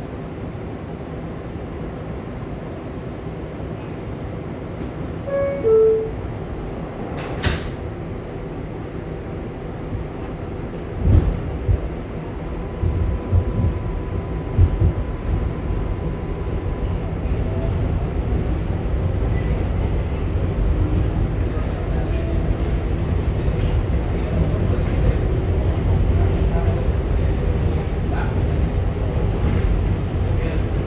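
Inside an R188 subway car: a short electronic door chime about five seconds in and the doors banging shut a couple of seconds later, then the train pulls out, its running rumble growing steadily louder as it picks up speed.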